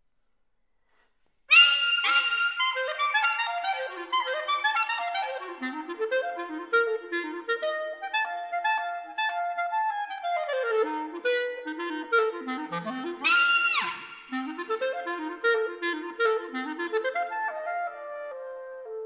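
Unaccompanied clarinet playing, starting about a second and a half in with a loud high note, then fast running passages, a held note midway, and a second loud high attack a few seconds later.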